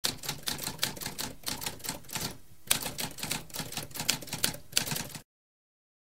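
Mechanical typewriter typing: a rapid run of key strikes, a short pause a little before halfway, then more fast strikes that stop suddenly about five seconds in.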